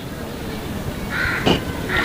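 A short harsh bird call about a second in, over the steady hiss and rumble of an old recording during a pause in a man's talk.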